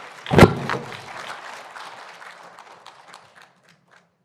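Audience applause in a conference hall, a spread of many hand claps that fades away over about three seconds. A loud thump comes about half a second in.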